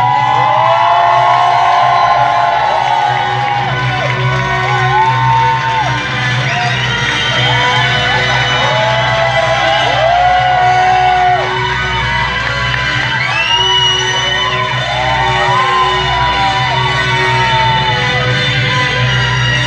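Live band playing an instrumental passage over a steady low drone, with the audience whooping and cheering over the music.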